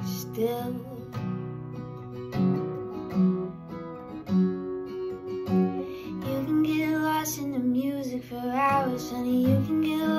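Acoustic guitar strummed through G, C and D chords, with a woman singing long held notes over it that waver in pitch in the second half.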